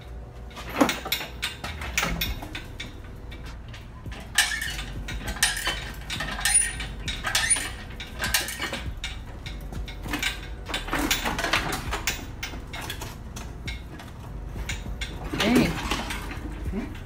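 Irregular metallic clanks, clicks and knocks of tools and engine parts during removal of the engine from the car on a hoist. A voice is heard briefly near the end.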